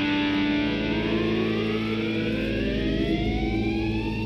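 Psychedelic rock music: a sustained, effects-laden drone in which a pitched tone glides slowly upward, siren-like, from about a second in and levels off near the end.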